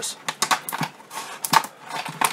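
Stiff plastic blister packaging crackling and clicking irregularly as it is handled and cut open with scissors.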